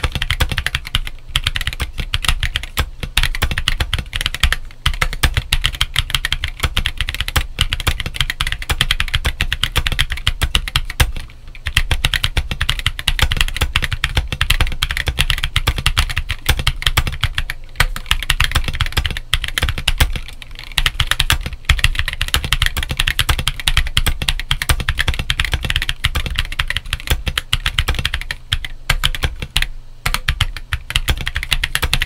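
Continuous typing on a stock Monsgeek M1 aluminum gasket-mount mechanical keyboard fitted with Gazzew U4T 65 g tactile switches and Idobao 9009 PBT MA-profile keycaps: a dense, unbroken run of keystrokes. There are brief pauses about eleven and twenty seconds in.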